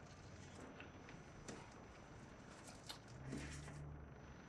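Near silence: faint rubbing and a few light taps of a cloth and marker on a whiteboard as a sketch is wiped and redrawn, with a brief low hum near the end.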